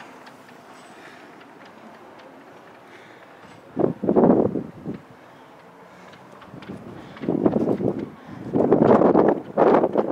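Wind on the camera microphone on an exposed tower top: a steady low rush, then louder gusty blasts about four seconds in and again in the last three seconds.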